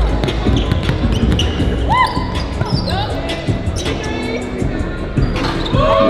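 A basketball dribbled on a hardwood gym floor, with short sneaker squeaks, under background music.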